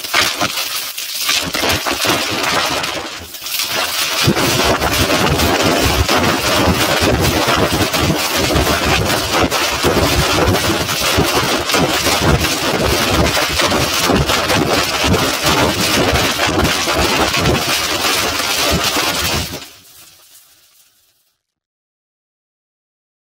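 Harsh, heavily distorted audio of a TV station ident put through editing effects, a dense gritty noise that dips briefly about three seconds in and fades out near the end.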